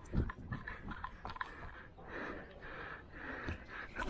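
A cricket batsman breathing hard after running two between the wickets, the breaths picked up close by a helmet-mounted camera mic, with a few soft footfall thuds.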